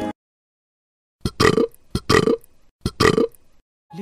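Background music cuts off abruptly, and after about a second of silence come three short, loud vocal sounds, roughly three-quarters of a second apart.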